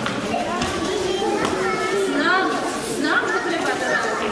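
Children's voices talking and calling out, some high-pitched with rising and falling pitch, over a murmur of chatter in a large room.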